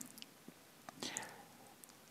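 Faint sounds of a plastic spatula slowly stirring liquid resin in a resin 3D printer's vat: a few soft clicks and a brief scraping hiss about a second in.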